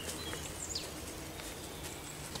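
Small birds chirping, with a short whistle and a quick falling note about half a second in, over a steady low outdoor background noise. A few soft ticks come near the end.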